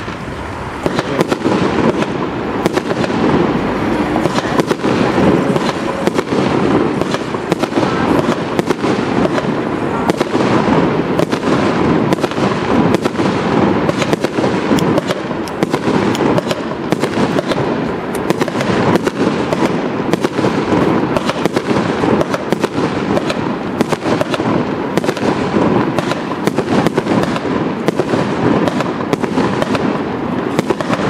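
A 36-shot firework cake (a battery of mortar tubes) firing shot after shot: launch thumps and aerial bursts in a rapid, unbroken run of pops and bangs, many a second.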